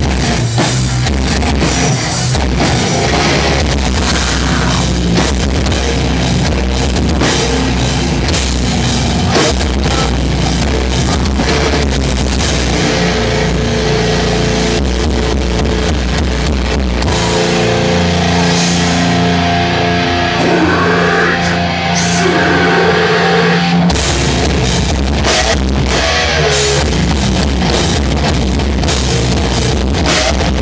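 A live hardcore band playing loud, heavy distorted guitars, bass and drums. About two-thirds of the way through, the drums drop out for several seconds and only held guitar notes ring, then the full band crashes back in.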